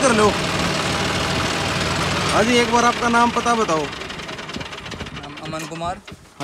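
John Deere 5310 tractor's three-cylinder diesel engine running steadily, then dying away about four seconds in.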